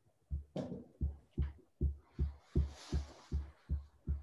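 A regular series of low, muffled thumps, about two and a half a second, with a brief rustle near the middle.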